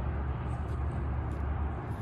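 Mini bike's small engine idling with a steady, low rumble.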